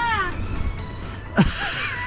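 A cat meowing, its pitch arching up and then down at the start, then a quick falling glide about a second and a half in, over background music.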